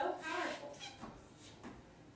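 A person's voice: a brief high-pitched vocal sound right at the start, then fainter speech-like sounds.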